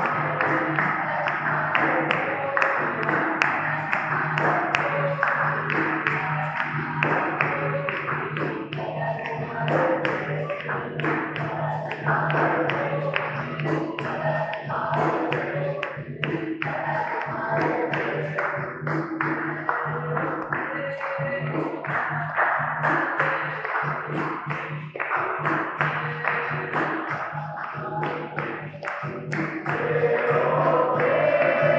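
Capoeira roda music: berimbaus, atabaque drum and the circle's hand clapping keep a steady rhythm, with some singing in the mix.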